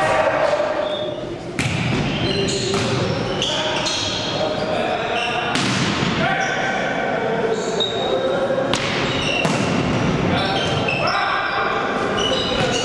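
Indoor volleyball rally in a sports hall: the ball is struck sharply several times, sneakers squeak on the court floor, and players shout to each other, all with the hall's echo.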